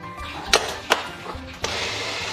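Two sharp knocks of a metal spoon against the bowl of a small electric food chopper, then, about one and a half seconds in, the chopper's motor starts with a steady whir as it grinds soaked dried chillies into ciba chilli paste.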